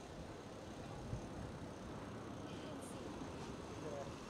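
Steady outdoor background noise with faint, indistinct voices, and a small high tick a little before three seconds in.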